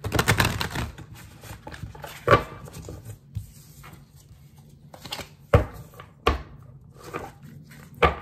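A tarot deck shuffled by hand: a quick run of card flicks in the first second, then scattered soft clicks with a few sharper taps as the cards are slid and knocked together.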